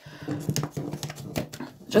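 Playing cards being handled and set down on a tabletop: a quick run of small clicks and taps, over a faint low droning sound.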